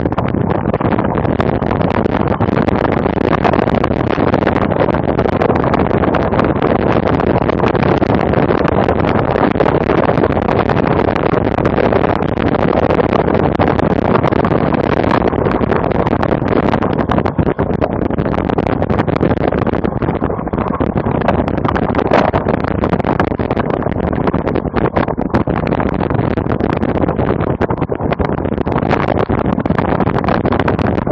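Loud, steady rush of wind and riding noise on an action camera's microphone as a cyclocross bike is raced over grass and dirt, going on without a break.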